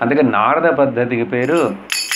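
A man's voice, then near the end a single sharp clack of wooden kartal hand clappers, their metal jingles ringing on briefly.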